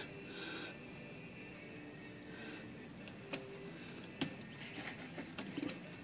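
Quiet room tone with a few faint, light metallic clicks from the typebars of a Smith Corona manual typewriter being handled: two single clicks in the middle, then several more close together near the end.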